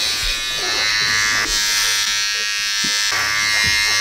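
Electric hair clippers running with a steady buzz, held against a man's neck and head.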